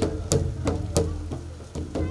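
Double-headed barrel hand drums beaten in a steady rhythm, sharp strokes about three times a second over a deep, ringing low tone.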